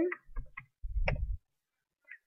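A few keystrokes on a computer keyboard, heard as short clicks, with a dull low thud about a second in.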